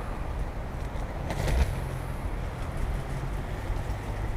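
Skate wheels rolling over a park path, a steady low rumble with wind buffeting the microphone as the skater moves along. A brief sharper clatter comes about a second and a half in.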